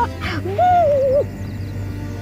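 A man's drawn-out comic cry: one wavering call that slides down in pitch and breaks off a little past a second in, followed by background music.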